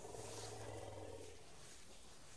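Faint, low rumble of an elephant: a steady hum that fades out about a second and a half in.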